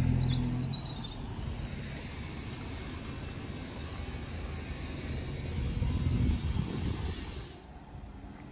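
Car engine running close by, its sound dropping away about a second in, then a low, steady rumble that swells briefly near the end.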